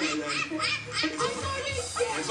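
A person laughing in a quick run of short pulses, with music underneath.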